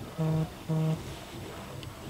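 Two short, identical low beeps about half a second apart from an LG SK1 sound bar, signalling that it has paired with a phone over Bluetooth.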